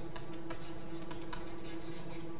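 Light, irregular taps and clicks of a stylus on a screen as words are handwritten in digital ink, about eight or nine in two seconds, over a faint steady hum.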